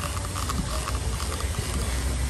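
Plastic trigger spray bottle being pumped again and again, its trigger clicking with each pull as it sprays solvent degreaser onto the truck's grille.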